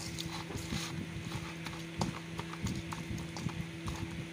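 A hand mixing raw marinated chicken with potato chunks and onions in a metal pot: irregular wet squelches and knocks of the pieces against the pot, over a steady low hum.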